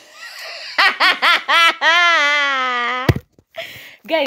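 A woman laughing hard: a few quick high-pitched laughs, then one long, drawn-out laugh that slowly falls in pitch, cut off by a sharp thump about three seconds in.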